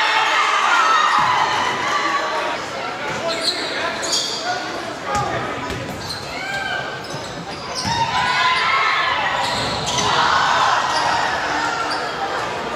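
Basketball bouncing on a hardwood gym floor during live play, with short sharp high sounds and shouting voices from players and crowd in a large, echoing gym.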